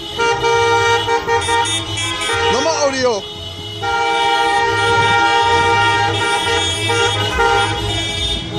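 Several car horns honking together in long, held blasts, with a short break about three seconds in. During that break a person yells or whoops.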